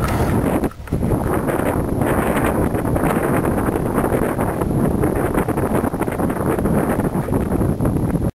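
Wind buffeting a handheld camera's microphone while riding a bicycle along a road, a loud, rough rushing with brief dropouts.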